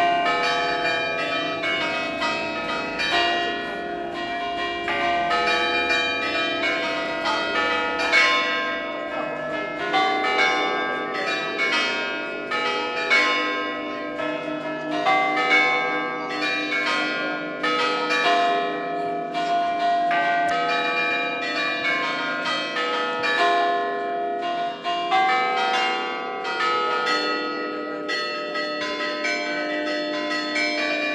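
Church bells of the parish's twelve-bell set, cast by Enrico Picasso in 1931, rung in quick succession. Several bells are struck each second, their pitched notes overlapping and ringing on into each other.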